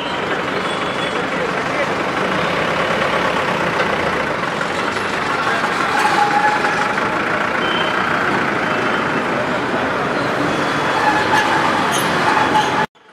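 A light canvas-covered goods truck's engine running as it drives past, over steady street noise.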